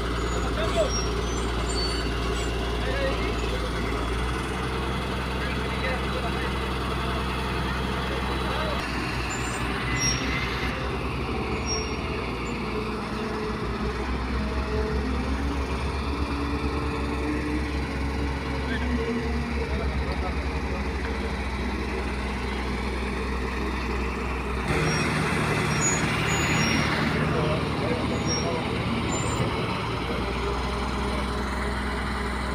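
Diesel-type work truck engine running steadily while the boom raises a pole. Its note shifts about nine seconds in and grows a little louder near the end.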